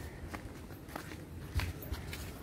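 Footsteps on a paved walkway, about four steps roughly half a second apart, the one near the end the loudest.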